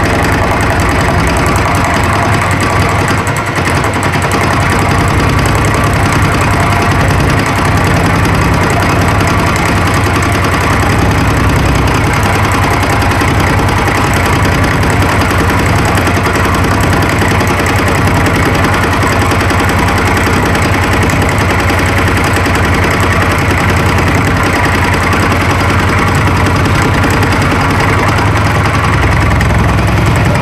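Milling machine running, its cutter taking a steady hand-fed cut in a welded-up steel tool block, with the motor and spindle hum under the cutting noise.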